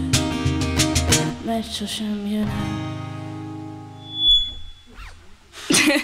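Acoustic guitar and cajón playing the last bars of a song. The guitar's final strummed chord rings on and fades away over a couple of seconds. After the chord dies there is a short high tone, and near the end audience applause begins.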